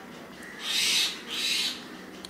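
Two soft hissing noises, each about half a second long, one right after the other, over faint room tone.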